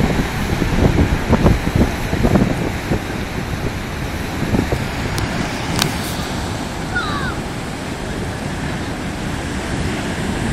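Heavy surf breaking and washing over a river bar, a steady roar with wind buffeting the microphone, strongest in the first few seconds.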